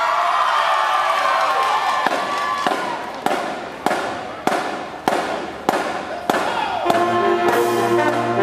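High school marching band: held notes die away, then sharp drum hits keep a steady beat about every 0.6 seconds, and the brass section comes in with a sustained chord near the end.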